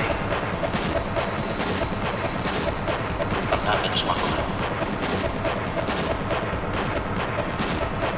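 Industrial techno: a dense, rapid run of hard, noisy, distorted percussion hits over a heavy low end, held at a steady loud level.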